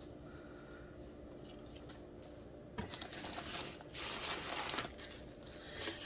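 Faint room tone with a low steady hum, then about three seconds in, a couple of seconds of rustling and crinkling as packing peanuts and plastic-wrapped wax melts are handled in a cardboard box.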